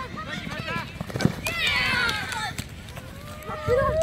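Sideline spectators shouting and cheering during a junior rugby league tackle. There is a sharp knock about a second in, a burst of many raised voices just after it, and one long held shout near the end.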